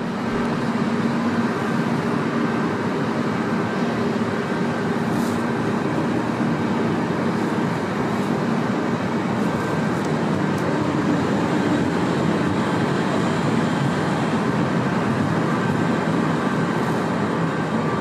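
Steady rolling and running noise of a Chemnitz Citybahn tram passing close by and pulling into the stop, with a faint steady hum in the first few seconds.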